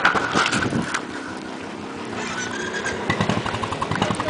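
Motorcycle engine running close by, its firing pulses more regular in the second half.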